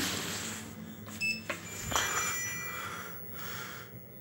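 Otis lift's electronic landing chime sounding as the down-direction hall lantern lights: a short high beep about a second in, then a ringing chime that fades out over about a second.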